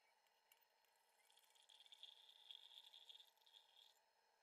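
Very faint trickle of liquid pouring into a glass beaker: the solution being decanted off gold that has settled at the bottom. The trickle swells from about a second in and fades just before the end.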